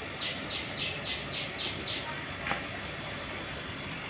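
A bird calls a quick run of about seven short falling notes in the first two seconds, over steady outdoor background noise. About two and a half seconds in, scissors snip once as an okra pod is cut from the plant.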